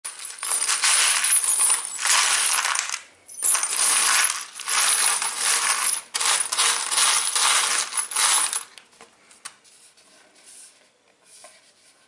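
A hand stirring and scooping through a plastic tray heaped with loose steel screws and nails: a dense metallic jingling clatter in three long runs, with short breaks about three and six seconds in. After about nine seconds it fades to faint scattered clinks.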